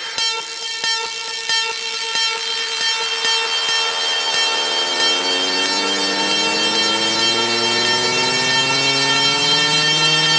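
Fidget house electronic dance music: a sustained, buzzy synth tone, horn- or siren-like, slowly sliding in pitch and swelling in a build-up. The beat fades away over the first few seconds.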